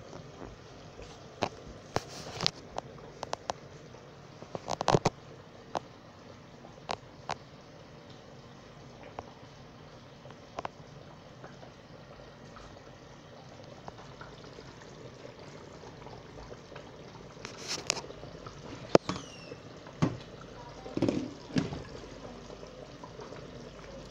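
Thick tomato stew simmering in a saucepan: scattered pops and clicks over a low steady hiss, with a denser run of louder knocks late on.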